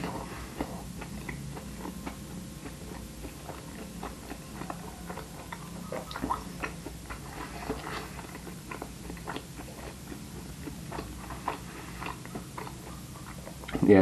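A person chewing a vegan mushroom burger with the mouth full, heard close up: irregular small wet clicks and smacks of eating, spread through the whole stretch.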